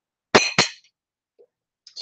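Two quick clinks of a metal fork against a plate, about a quarter second apart, each ringing briefly.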